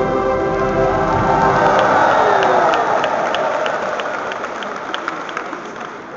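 The last held chord of a chorale sung by a large crowd in a church dies away about a second in. A crowd applauding follows, rising briefly and then fading off.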